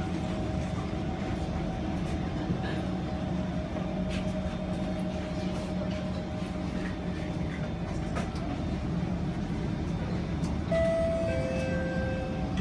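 Steady hum of an MRT train carriage heard from inside the car, with a few faint clicks. Near the end, a two-note falling chime sounds: the door-closing warning.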